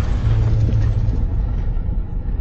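Deep, steady rumble of a cinematic logo-reveal sound effect, the low tail of a boom, with a hiss on top that fades away over the second half.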